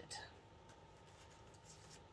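Near silence with a couple of faint paper rustles as a paper envelope is handled.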